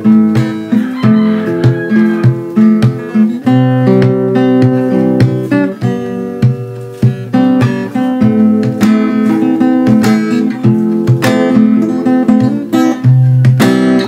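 Steel-string acoustic guitar played fingerstyle: a bass line and melody plucked together, with sharp percussive hits mixed in at intervals.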